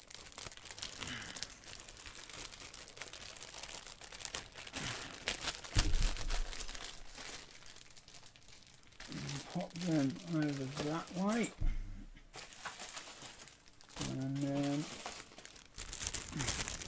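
Plastic kit bag crinkling and rustling as a sprue of plastic model parts snags and is worked out of it, with a dull knock about six seconds in. Short wordless vocal sounds come around ten and fifteen seconds.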